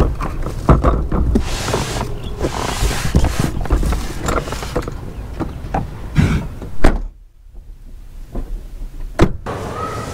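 Knocking and clattering of a folding plastic hand trolley being handled and loaded into a car boot, with sharp knocks against the boot. The loudest knock comes about seven seconds in, after which the sound drops away suddenly, with one more sharp knock shortly before the end.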